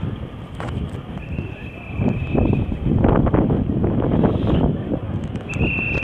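Wind buffeting a handheld phone's microphone outdoors: a rough, rumbling noise that grows louder about two seconds in and stays strong for a few seconds.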